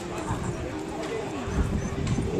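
Background voices of people talking in a street crowd, with a faint steady hum under them.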